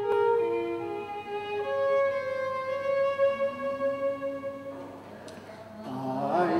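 Fiddle playing a slow melody in long, sustained bowed notes, dying away near the end.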